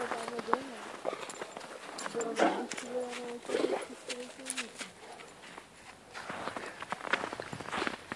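Footsteps crunching in snow. A quiet voice is heard at the start and again between about two and five seconds in.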